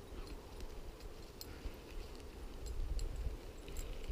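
Dry scrub twigs and brush crackling with movement: scattered sharp snaps and ticks over a low rumble of handling or wind on the microphone, heaviest about three seconds in.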